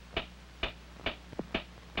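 A clock ticking steadily, about two ticks a second, over a low steady hum.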